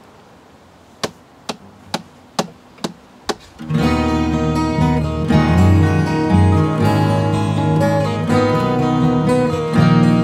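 Six sharp taps, evenly spaced at about two a second, count in the song; then three acoustic guitars come in together a little under four seconds in, playing steady strummed chords.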